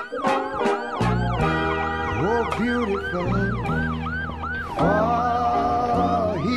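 Emergency vehicle siren in a fast yelp, rising and falling about three times a second, until near the end. Music plays beneath it from about a second in.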